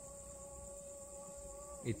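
Crickets trilling steadily in the night air, joined by a steady mid-pitched tone that holds for almost two seconds and stops just before a man starts talking near the end.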